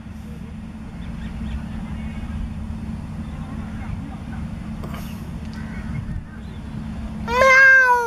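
A steady low outdoor rumble, then near the end a cat meows loudly once, a long call that falls in pitch at its close.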